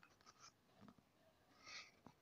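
Near silence: room tone, with a few tiny ticks and one faint short hiss near the end.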